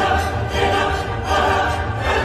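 Loud choral music with operatic singing, played without a break.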